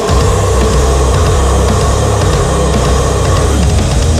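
Heavy metal band playing with dense drums, over which a female extreme vocalist holds one long harsh scream that stops a little before the end.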